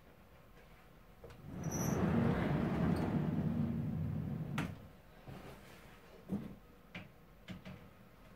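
Glass display cabinet door being moved: a rumbling scrape for about three seconds that ends in a sharp knock, followed by a few light clicks.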